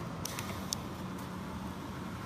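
A few light clicks in the first second from the ReVel ventilator's control knob being turned and panel buttons pressed, over a steady low hum.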